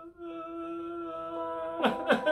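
A man's voice holding one long, steady hummed note, which breaks off briefly just after the start. Near the end it gives way to loud 'ha, ha, ha' laughter.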